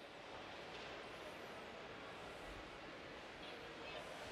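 Faint, steady background noise of a large indoor exhibition hall, with no distinct events standing out.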